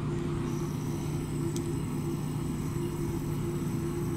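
A steady mechanical hum with two constant low tones and a light hiss, like ventilation or other running building equipment, with one faint click about a second and a half in.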